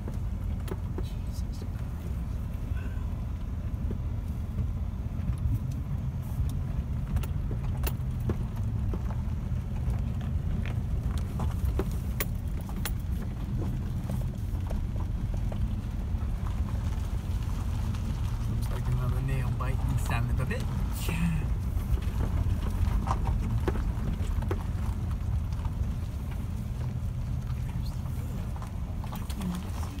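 Pickup truck in four-wheel drive crawling over a rough gravel desert track, heard from inside the cab: a steady low rumble of engine and tyres with frequent clicks and rattles from stones and the cab.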